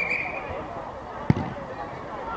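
Footballers' voices calling across an outdoor pitch, starting with a short high shout, and one sharp thud of a football being kicked about two-thirds of the way in.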